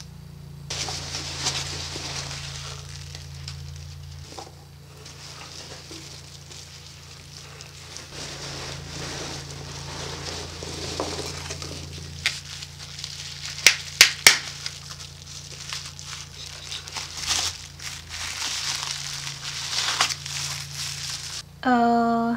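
Packing peanuts and bubble wrap rustling and crinkling as a cardboard box is unpacked by hand, with a few loud sharp clicks about two-thirds of the way through.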